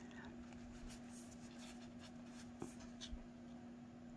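Faint handling of tarot cards: soft sliding and rubbing of the cards, with a few light clicks, two of them after the middle. A steady low hum runs underneath.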